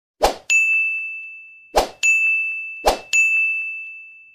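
Bell ding sound effect of an animated subscribe graphic, heard three times, each ding coming just after a short swish. Each ding is a single clear tone that rings and fades, and the third one is still dying away near the end.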